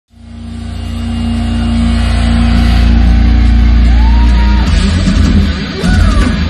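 Live metal band: a low, sustained distorted guitar chord swells in, with one gliding pitch bend. About 4.7 s in, the drums and band break into heavy, rapid rhythmic hits.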